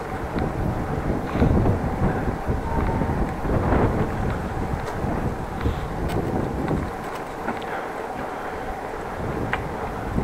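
Wind buffeting the microphone during a bicycle ride: an uneven rumble over road and street noise, with a few light clicks.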